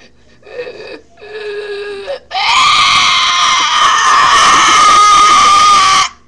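A girl's loud, high-pitched scream, held at one steady pitch for nearly four seconds and cut off abruptly, after a couple of short vocal noises.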